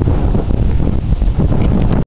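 Wind buffeting the camera's microphone: a loud, steady low noise.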